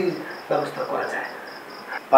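A cricket chirping in a steady, evenly pulsed high trill, with a man's voice briefly and quietly under it in the middle.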